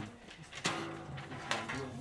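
Faint held notes from wind band instruments, with two short clicks about a second apart.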